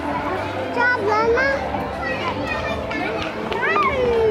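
A group of children chattering and calling out over one another, their high voices overlapping, with a rising call near the end.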